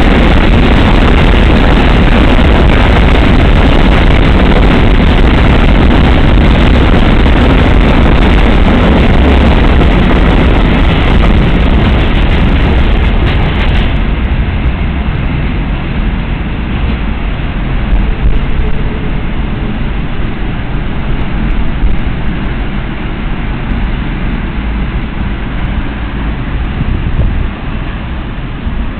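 Freight train of covered hopper wagons rolling past on the rails: a loud, steady rush of wheel and wagon noise that eases off about halfway through as the end of the train draws away.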